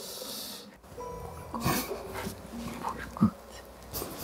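Two adults whispering to each other, with breathy hisses and short, hushed voice sounds.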